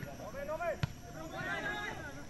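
A single dull thud of a football being kicked, a little under halfway through, over the chatter of spectators' voices.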